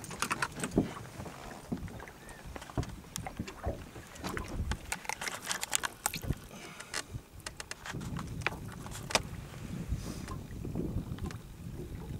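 Irregular clicks, knocks and small metallic rattles of hands at work in a small boat while a pike is unhooked: the lure and its treble hooks being worked free.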